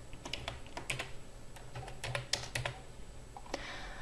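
Typing on a computer keyboard: faint, irregular keystrokes in small clusters with short pauses between them, as a password is entered.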